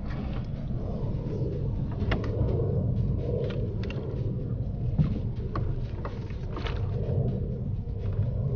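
Steady low rumble of wind and water around a small wooden rowboat, with scattered light clicks and knocks from handling the fishing rod and landing net.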